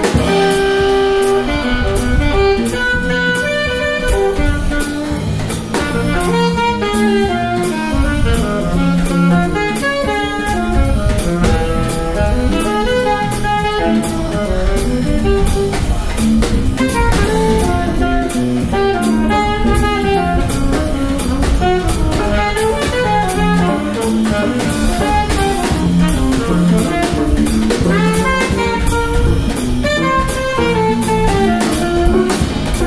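Live jazz quartet playing: saxophone, electric bass, drum kit with steady cymbal strokes, and archtop electric guitar.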